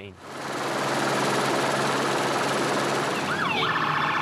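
A loud, steady rushing noise fades in. About three seconds in, a police car siren starts with a few quick rising and falling sweeps, then settles into a fast warble.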